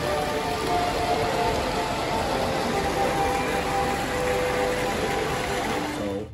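Steady rushing of water falling from a fountain, with faint music and voices underneath.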